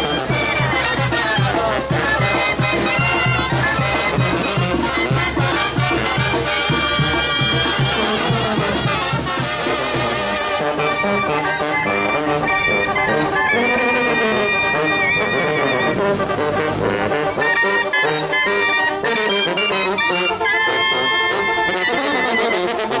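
Mexican brass banda with sousaphones, trombones and trumpets playing a lively son. About ten seconds in, the steady low bass beat drops out and the horns carry on with held and moving lines.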